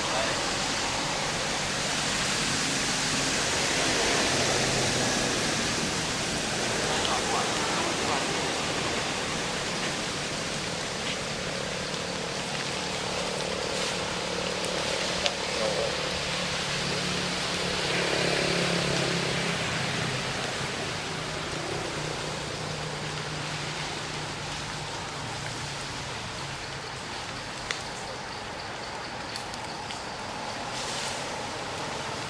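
Steady outdoor background hiss with faint, indistinct voices in the distance.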